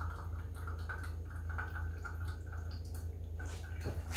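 Espresso trickling and dripping into a small glass from a hand-lever espresso maker as its arms are pressed down, heard quietly over a steady low hum.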